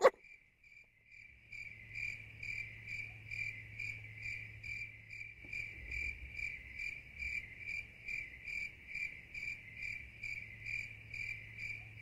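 Crickets chirping, a steady high trill pulsing about three times a second over a faint low hum, used as a sound effect.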